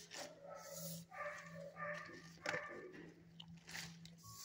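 Dogs whining and barking in shelter kennels in a series of short pitched calls, over a steady low hum.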